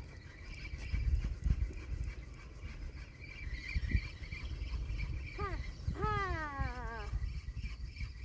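A cat meowing twice: a short call, then a longer one that falls in pitch, over a low steady rumble.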